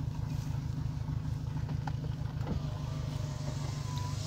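Car running at low speed, heard from inside the cabin: a steady low engine and road rumble, with a faint thin whine in the last second or so.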